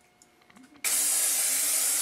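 Aerosol can of Rust-Oleum rubberized undercoating spraying, a steady hiss that starts suddenly about a second in.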